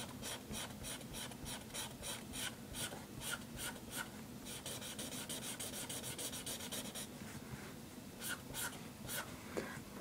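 Marker tip scratching on sketchbook paper in short quick strokes, about three or four a second, then a couple of seconds of rapid continuous scribbling from about halfway in, and a few last strokes near the end.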